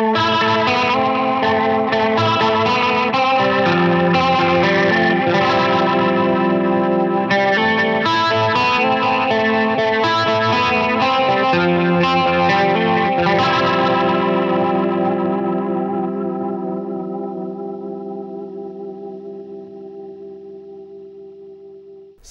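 Electric guitar on a clean tone played through a Leslie rotary-speaker simulation: sustained chords with a swirling, wavering shimmer. The last chord rings on and fades away slowly over the final several seconds.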